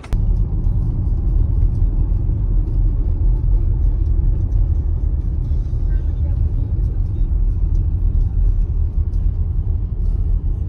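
Car driving along a road, heard from inside the cabin: a steady low rumble of road and wind noise.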